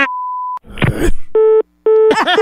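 A steady high bleep for about half a second, then a brief rough burst of noise. After that comes a telephone busy signal: low beeps about a quarter second long with quarter-second gaps, the line gone dead after a hang-up.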